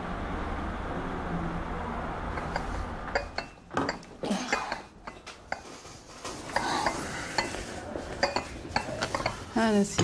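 China teacups and saucers clinking on a tray as a tea set is put down on a table: a string of light, irregular clinks starting about three seconds in.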